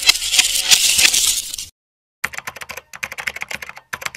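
Keyboard-typing sound effect: a dense run of rapid clicks, a short gap about two seconds in, then a quicker string of separate keystroke clicks as text types out on screen.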